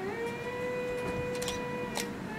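A woman humming one long held note that steps up in pitch at the start and then stays level, with a few faint clicks over it.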